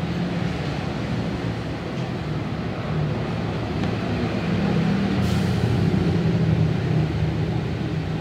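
Steady low mechanical rumble with a hiss over it, growing a little louder in the second half, with a faint click about five seconds in.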